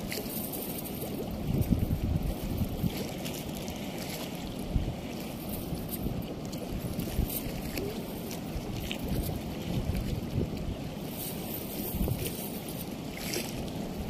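Wind buffeting the microphone in gusts over a steady low rush of water, with a few faint clicks.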